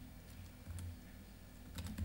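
Faint typing on a MacBook Pro laptop keyboard. A few scattered keystrokes come first, then a quick cluster of taps near the end.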